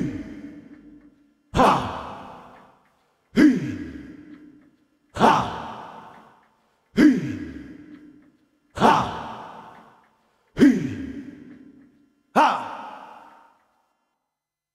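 BugBrand modular synthesizer playing a slow, evenly spaced run of seven percussive hits, about one every two seconds. Each starts sharply with a pitch that drops fast, then a hiss that fades over about a second.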